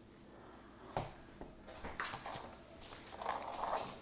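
Someone rummaging through things by hand: a knock about a second in, then rustling and handling noises, loudest near the end.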